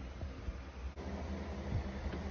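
A low steady background hum with a faint even hiss, with no distinct event; the hum dips briefly about a second in.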